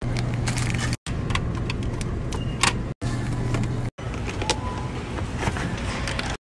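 Short bursts of grocery-handling noise, a metal shopping cart rattling and packaged items being moved, over a steady low hum. Each burst is cut off abruptly by a brief silence about every one to two seconds.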